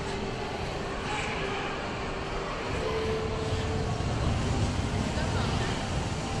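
Shopping-mall ambience: a steady low rumble with faint distant voices, the rumble growing louder from about halfway through.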